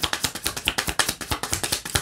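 A deck of tarot cards being shuffled by hand: a rapid, steady run of crisp clicks as the card edges slap against each other.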